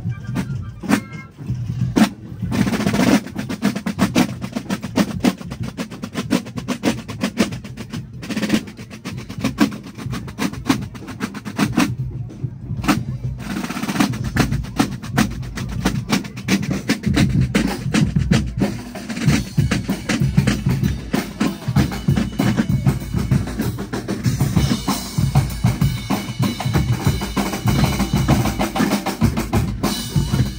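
Basel drums, rope-tensioned wooden side drums, played together by a marching drum corps in fast, dense rolls and strokes. There are brief breaks about 2 and 12 seconds in. Faint held pitched notes join in during the last few seconds.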